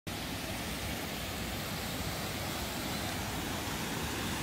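Steady rushing of a creek running high, a continuous even hiss of flowing water.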